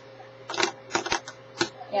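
A fingerboard clacking against a desktop as it is flicked with the fingers: a quick series of about half a dozen sharp clicks, starting about half a second in.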